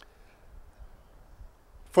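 A pause in a man's speech with only faint background noise, then he starts speaking again just before the end.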